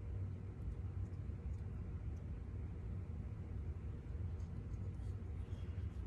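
Low steady hum of a quiet room with a few faint light ticks from hands handling feathers and thread while tying them onto a small jig.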